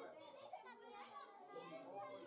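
Faint, indistinct chatter of several people, children's voices among them.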